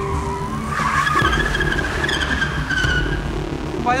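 Car tyres squealing under hard braking as the car skids to a stop: one wavering squeal that climbs in pitch about a second in and fades out a little after three seconds.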